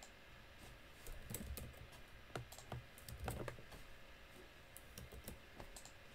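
Faint, irregular key taps and clicks of someone typing out a short text message on a phone, with soft handling thumps and the taps bunched in the middle.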